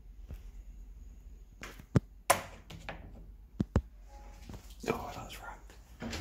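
Several sharp knocks and clunks in two close pairs, about two seconds in and again a second and a half later, with a low voice near the end.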